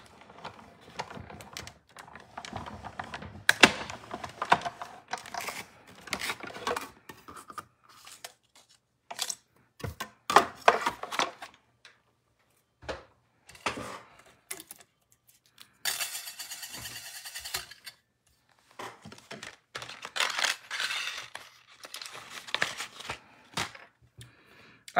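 A manual die-cutting machine and its plastic cutting plates and metal egg die being worked and handled: a run of clicks, clacks and rattles with short pauses, one steady rasping stretch of about two seconds midway, and paper rustling as the die-cut egg is taken out.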